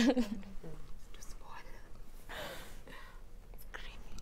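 Low whispering and murmured voices, with the tail of a spoken word at the start and a breathy whisper about halfway through.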